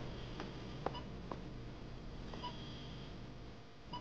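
Faint, evenly spaced electronic beeps from a hospital patient monitor, about one every second and a half. A few light clicks and taps of small objects being handled come in the first second and a half.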